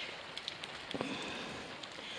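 Steady rain falling on a garden: an even hiss of rain with scattered ticks of single drops, and one short faint sound about a second in.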